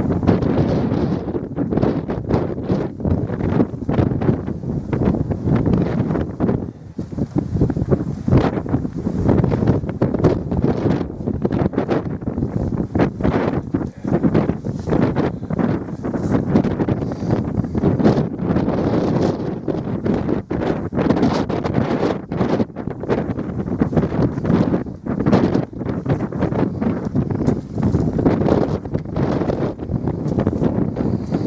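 Strong, gusty wind buffeting the camera's microphone. It makes a continuous low rumble that keeps swelling and dropping.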